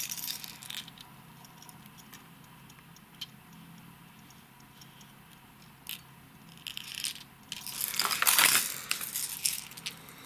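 Hard plastic fishing lures (wobblers) with metal treble hooks and split rings being handled. There is a sharp click at the start and a few light ticks, then about three seconds of clinking and rattling, loudest about eight and a half seconds in.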